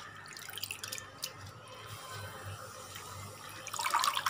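Water in a cooking pan of black nightshade greens, bubbling with faint crackles. The crackling grows louder and denser near the end.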